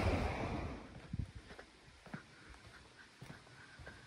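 Soft footsteps on a paved road, a handful of light irregular steps. Wind noise on the microphone dies away in the first second.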